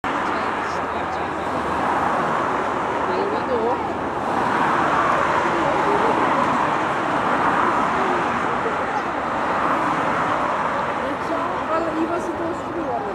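Steady road traffic noise from cars and motorcycles, with indistinct voices talking underneath.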